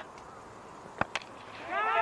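Cricket bat striking the ball: a single sharp crack about a second in, followed closely by a fainter knock.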